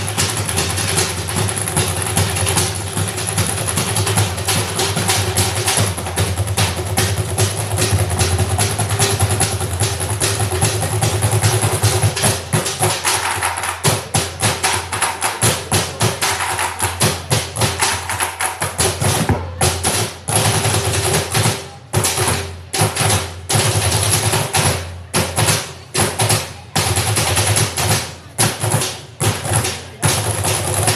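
A percussion ensemble playing drums made from used plastic barrels, buckets and other scrap containers, struck with sticks. A dense, continuous beat for the first two-thirds gives way to sparser, separated strokes with short breaks between them.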